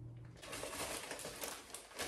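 Faint crinkling of a thin plastic mailer bag being handled and pulled open.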